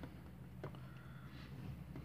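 Faint handling sounds of a hand and pencil moving over a sheet of drawing paper, with one light tap about half a second in, over a low steady hum.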